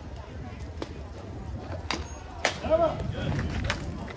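A pitched baseball smacking into a catcher's mitt with one sharp pop about two and a half seconds in, under distant voices calling from the bench and stands, followed by a short call.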